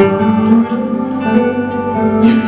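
Live band music led by two electric guitars, strummed chords ringing on with no singing.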